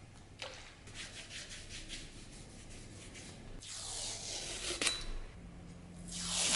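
A cloth rag rubbed against a steel axe head. It opens with a click and a run of short scraping strokes, then a longer wipe about four seconds in that ends in a sharp click.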